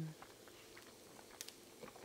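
Faint chewing and small mouth clicks from someone eating a pita sandwich, just after the end of an appreciative hummed "mm" that trails off right at the start.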